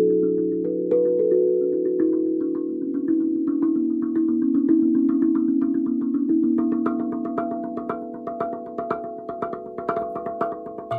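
Steel tongue drum tuned to B Celtic minor, struck with felt-tipped mallets in a groovy rhythm, its notes ringing on and overlapping. The strikes come quicker and shorter in the second half.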